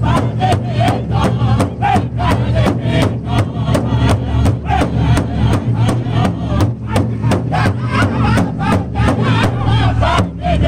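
Powwow drum group: several men striking one large bass drum in unison, a steady beat of about three strikes a second, while singing together over it in high, wavering voices.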